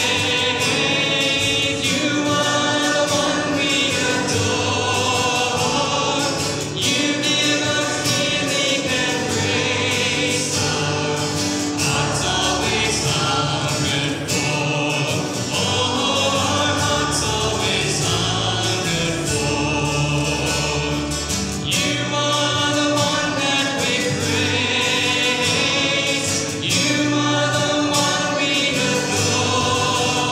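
A small praise band playing a worship song: several men and women singing together over strummed acoustic guitars and upright bass, without a break.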